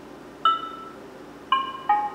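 Android TalkBack screen reader's audio cues from a Samsung phone's speaker as a list is scrolled with two fingers: a short tone about half a second in, then a second tone about a second later that steps down in pitch.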